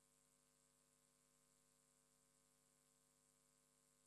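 Near silence, with only a very faint steady electrical hum.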